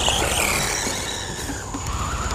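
Electric motor and drivetrain whine of a 1/14-scale RC truggy driving on grass, the pitch falling early then climbing again as the throttle is opened.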